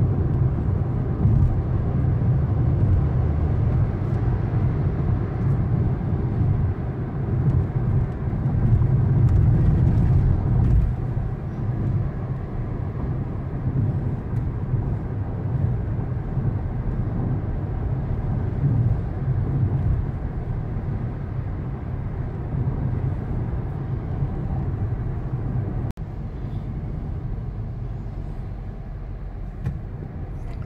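Steady low rumble of a moving car's engine and tyres heard from inside the cabin, a little louder about ten seconds in.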